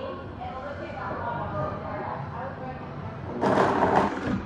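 Indistinct background voices, then a sudden loud burst lasting under a second near the end, from the countertop blender being pulsed.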